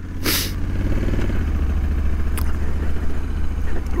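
A Honda Africa Twin's parallel-twin engine runs steadily at low revs as the bike pulls away in gear under its dual-clutch transmission. A brief hiss comes just after the start.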